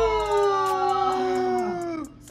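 A woman's long, drawn-out 'ahh' of relief on landing on a soft mattress, falling slowly in pitch and cutting off near the end.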